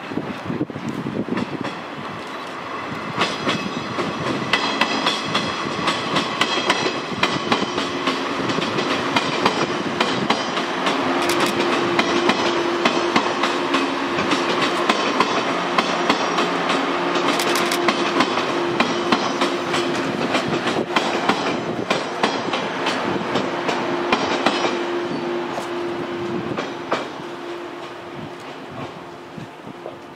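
Seven-car 115 series electric train passing, its wheels clicking over rail joints in a steady clickety-clack, with a steady hum through the middle as the cars go by. The sound fades near the end as the last car passes.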